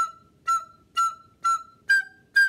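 Soprano recorder blown in hard, separate puffs about twice a second, each note shrill and overblown: four on one pitch, then a higher one near the end. It is the bad sound of too much air, each note huffed out with the breath instead of tongued.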